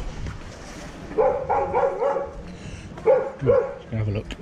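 A dog barking: a quick run of short, pitched barks about a second in, then two more near the end.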